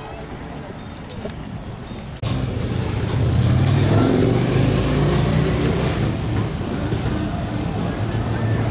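Street traffic noise, then, with a sudden step up in level about two seconds in, the low, steady running of a group of police motorcycle engines rolling slowly past.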